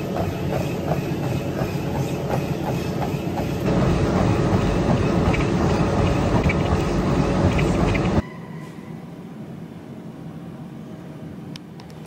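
Gym treadmill running, its belt and motor rumbling under steady rhythmic footfalls, louder from about four seconds in. About eight seconds in it cuts off abruptly to a much quieter steady background.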